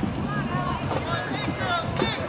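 Sports-field ambience: scattered distant voices from spectators and players over a steady rumble of wind on the microphone.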